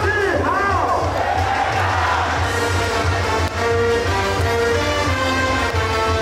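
Baseball cheer song playing over the stadium loudspeakers with a steady beat, the crowd's voices joining in; a few swooping calls in the first second.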